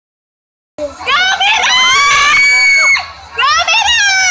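Young people screaming in high-pitched, drawn-out shrieks: one long scream begins just under a second in and holds for about two seconds, and another starts near the end.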